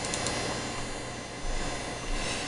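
Steady background hiss with a faint hum, the noise floor of a desk microphone in a small room, and a couple of faint clicks near the start.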